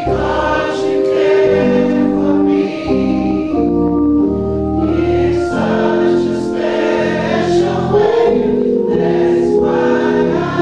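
Church choir singing slowly with organ accompaniment, in long held chords that change about once a second.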